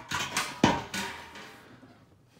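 Handling noise: several sharp knocks and rustles in the first second, the loudest a deep thump about two-thirds of a second in, then fading away.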